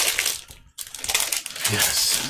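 Foil booster-pack wrapper crinkling in the hands as the pack is opened, in two stretches with a brief pause just under a second in.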